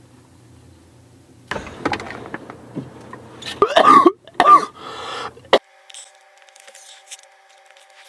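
A person coughing and clearing their throat in several harsh bursts, loudest about halfway through; then a sudden cut to quiet with a faint steady hum.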